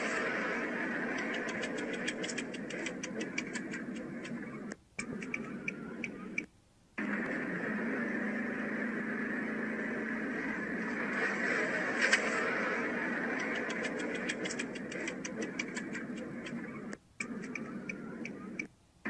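Steady road and wind noise of a car moving at highway speed, with runs of quickening clicks. The same few seconds of sound repeat, broken by brief dropouts.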